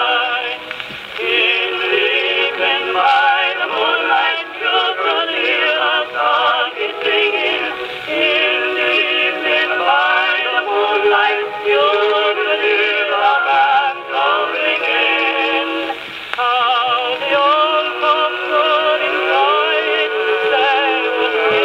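A 1915 Columbia Graphonola wind-up phonograph playing a 78 rpm record through its acoustic reproducer: a singer with strong vibrato over accompaniment, continuous throughout. The sound is thin and narrow, with no deep bass and no bright treble, typical of acoustic playback of an early record.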